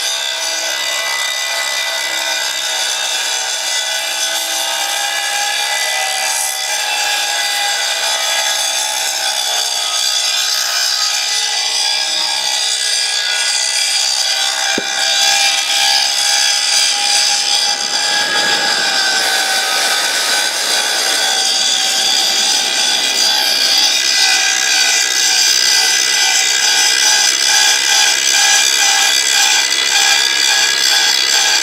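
Large angle grinder's abrasive disc grinding the torch-cut edge of a steel plate, running steadily under load and growing somewhat louder about halfway through.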